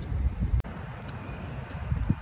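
Low, uneven rumble of wind buffeting a phone's microphone outdoors, with a brief drop about half a second in.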